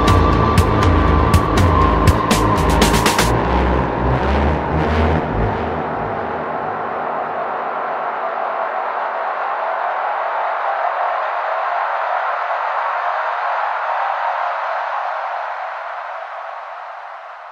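Electronic synthwave music: drum hits and bass run for the first few seconds, then drop away, leaving a sustained synthesizer wash that begins to fade near the end.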